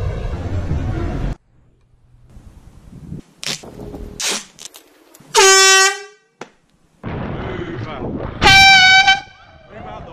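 Two short blasts from a bicycle-mounted air horn, the first lower-pitched and the second higher, about three seconds apart, sounded at pedestrians walking in the cycle lane. Around them, the rush of road and wind noise from the moving bike drops out abruptly and cuts back in.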